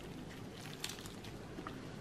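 Faint handling noises as a halved pomegranate is turned over in the hand and a spoon is readied, with a couple of light clicks.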